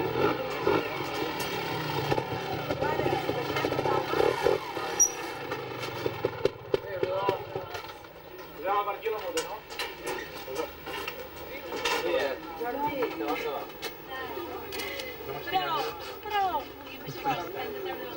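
Several people talking at the same time, overlapping voices in conversation, with a low rumble under them for about the first half.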